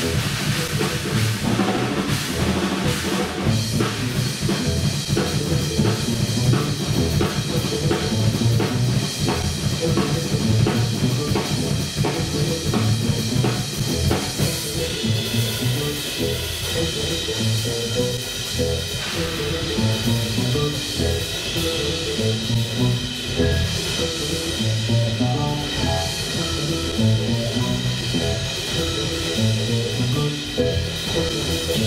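Live jazz-rock band playing: a busy drum kit over an electric bass line, with other pitched instrument parts above.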